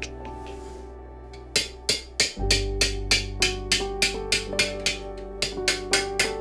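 Hammer striking a hand-raised silver vessel in a quick, even rhythm of about three blows a second, starting about a second and a half in, pushing a pattern into the metal's surface. A music bed plays underneath.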